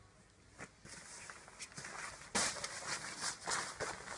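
Clothes handled on a pile as garments are flipped over one after another: irregular rustles and swishes of fabric. They are sparse at first, then come thicker and louder from about two seconds in, with the sharpest rustle just after two seconds.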